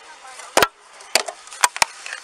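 Four sharp knocks: one about half a second in, another about a second in, then two in quick succession near the end.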